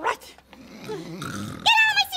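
Exaggerated puppet-character vocalising: a short high cry, then a low rough growling grumble for about a second, then a loud high wavering cry near the end.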